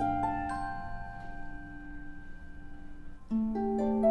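A quiet passage of orchestral music: a held note with a few soft plucked notes. A little after three seconds a concert harp comes in with a rising run of plucked notes.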